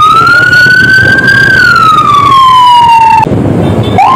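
Police motorcycle escort's siren wailing: one slow rise and fall in pitch that cuts off shortly before the end, over low road and engine noise.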